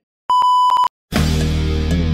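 A single steady, high-pitched test-tone beep of about half a second, the bars-and-tone signal that goes with a colour-bar test pattern, cut off cleanly. Just after a second in, loud intro music starts.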